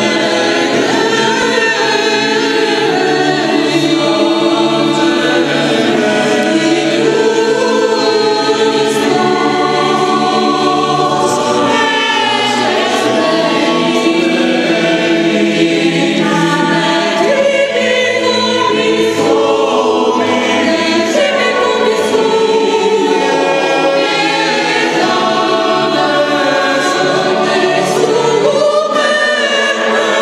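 Polyphonic choir singing a Christmas carol in several parts, with no pause.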